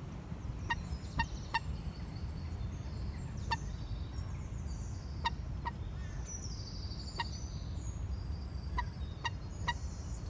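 Birds calling: about a dozen short, sharp pipping calls at irregular intervals, with songbirds trilling high over them, one song running down the scale about seven seconds in. A steady low rumble lies underneath.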